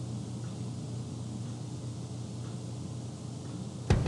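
Steady low electrical hum with a hiss: room tone. Right at the end, drum-backed music from an online video advert starts abruptly and loudly.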